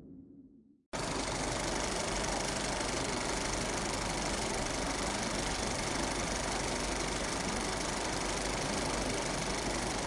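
The tail of the music fades out. About a second in, a steady, even noise cuts in abruptly and holds at one level, like a machine running or static hiss.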